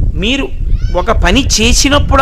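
A man's voice speaking Telugu, with drawn-out vowels that glide up and down in pitch.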